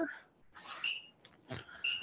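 A bird chirping twice, each a short high note held at one pitch, about a second apart.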